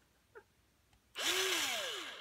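Electric pencil sharpener running as a pencil is pushed in, starting about a second in and lasting about a second. The motor's pitch rises briefly and then sinks under the grinding of the blades on the pencil.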